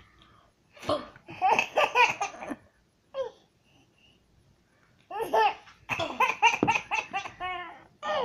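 A baby laughing in two bouts of high-pitched, rhythmic laughter: one about a second in and a longer one from about five seconds in.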